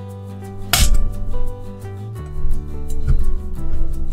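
Background music with steady tones, and a sharp plastic knock a little under a second in, followed by a few lighter knocks, as a toy's plastic bead-coring press is pushed down on a bead.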